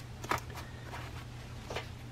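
Quiet room with a steady low hum and two faint handling clicks, one about a quarter second in and one near the end.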